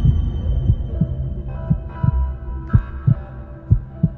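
Heartbeat sound effect: low thumps in lub-dub pairs roughly once a second, over sustained music tones.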